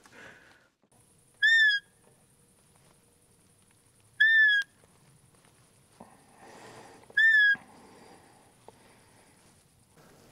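Roe deer lure call (fiep) blown three times: short, high whistled squeaks under half a second each, about three seconds apart and all alike, used to call a roebuck in.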